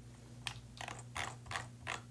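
Soft clicking at a computer: about eight short, sharp clicks from about half a second in, irregularly spaced, some in quick pairs.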